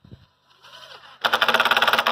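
Cordless drill with a countersink bit starting up quietly, then boring a countersunk pilot hole into a thin wooden corrugated closeout strip: loud, with a rapid chatter, for the last second or so.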